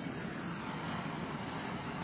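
Handheld butane blowtorch burning with a steady hiss as its flame singes the skin of raw chicken pieces.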